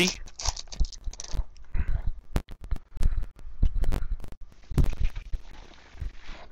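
A foil trading-card pack wrapper being torn open and crumpled by hand: irregular crackling and crinkling.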